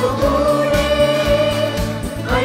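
A choir singing a Christian devotional song, holding one long note over electronic keyboard accompaniment with a steady beat.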